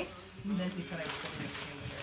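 Quiet voices in a small room: soft, low talk between louder remarks.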